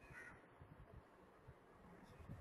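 Near silence: room tone with faint low thumps, and a brief faint higher sound at the very start.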